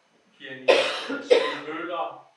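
A person coughing twice, two loud, sudden coughs about half a second apart.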